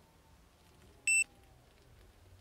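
A single short, high-pitched electronic beep, about a fifth of a second long, about a second in, loud against a quiet background.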